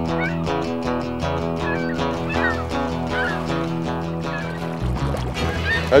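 Instrumental music with sustained bass notes, starting abruptly out of silence; the bass pattern changes about five seconds in.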